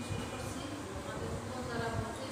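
A continuous buzzing hum, with a woman's voice speaking over it.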